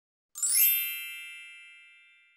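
A bright chime sound effect for a logo. It begins about a third of a second in with a quick sparkling shimmer, then one ringing chord slowly fades away.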